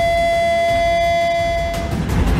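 An air horn blown in one long, steady note that fades out near the end.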